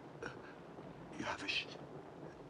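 A man's faint, breathy whisper, with one short burst about a second in.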